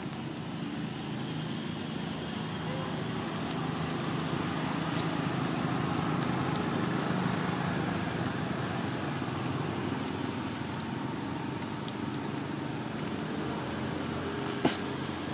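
A motor engine droning steadily, growing louder toward the middle and then easing off slightly, as a vehicle does when it passes.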